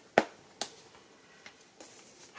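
Stiff cardstock flaps of a handmade scrapbook folio being lifted open by hand: two sharp snaps about half a second apart, the first the loudest, then a couple of faint paper ticks.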